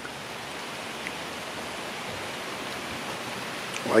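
Steady rain falling, an even hiss with no breaks, with one faint tick about a second in.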